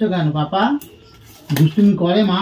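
Conversational speech, with two short sharp clinks: one a little under a second in, the other about a second and a half in.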